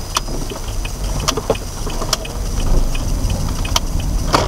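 Low road and engine rumble inside a slowly driving car, with several sharp clicks or knocks from the cabin.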